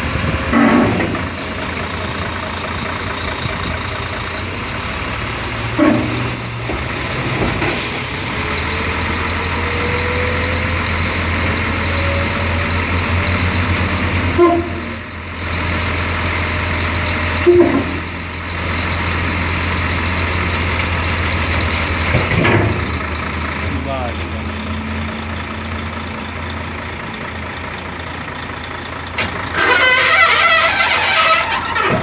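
Heavy diesel truck engine of a Mercedes-Benz Actros hook-lift running steadily under load, driving the hydraulic hook arm as it pulls a roll-off container up onto the truck bed. A few short clunks sound along the way, and a faint rising whine runs for several seconds.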